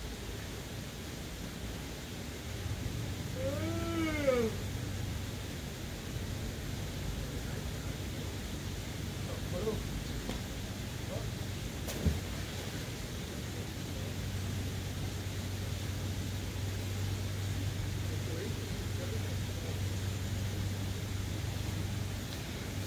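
A steady low hum. About four seconds in, a single drawn-out call rises and falls in pitch, followed later by a few faint distant calls. A single sharp tap comes about twelve seconds in.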